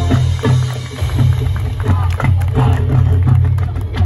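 High school marching band playing a percussion-led passage: many drum and mallet strikes over low held notes, with a loud full-band hit at the end.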